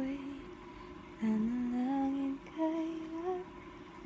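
A voice humming a slow tune in a few held notes that rise gently in pitch, in three short phrases with brief pauses between them.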